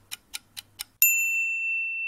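Countdown timer sound effect: a light clock-like ticking, about four ticks a second, then about a second in a single louder ding that rings on and slowly fades, marking the time running out and the result being revealed.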